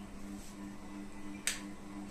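A single sharp click about one and a half seconds in: the projector's power switch being pressed to turn it on. A faint steady low hum runs underneath.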